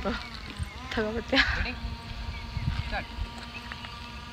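Indistinct voices of people talking, heard briefly about a second in, over a low steady rumble.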